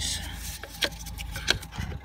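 A gloved hand working a plastic hose loose in a car engine bay: rubbing and scraping with two sharp plastic clicks, the second louder.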